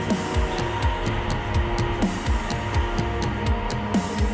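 Rock band music: electric guitars over a steady, driving drum beat with regular cymbal hits and a sustained atmospheric layer.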